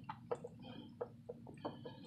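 Screwdriver tightening a car radiator's screw-type drain plug: a string of faint, short clicks at uneven spacing, about four a second.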